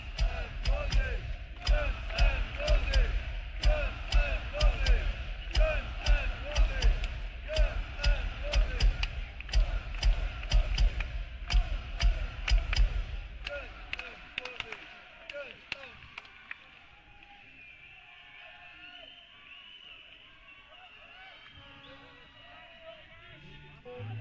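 Live rock band in an arena, drums striking a steady pounding rhythm over heavy bass, dying away about 14 s in. The crowd then cheers and whistles.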